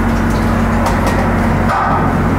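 Steady low drone of heavy construction machinery: an engine running at a constant speed with an unchanging hum, and a few faint clicks over it.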